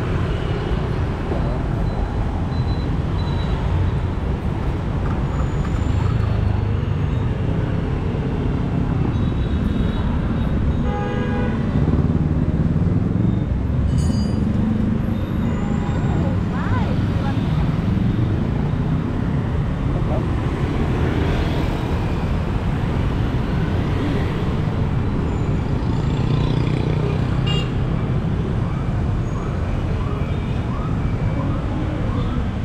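Busy street traffic of motor scooters running and passing close by, a steady engine rumble, with short horn toots about a third of the way through and again near the middle.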